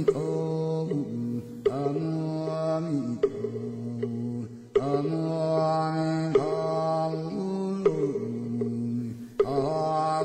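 Background music of slow chanting: long held notes that step to a new pitch about every second and a half.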